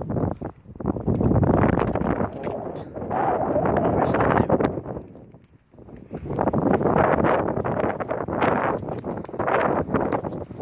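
Wind buffeting a phone microphone in gusts, dropping away briefly about five and a half seconds in.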